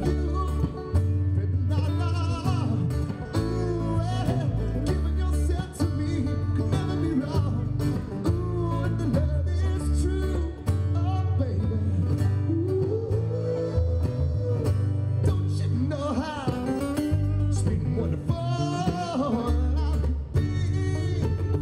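Live rockgrass band playing: a male lead vocalist sings over strummed acoustic guitar, mandolin, banjo and a heavy bass line.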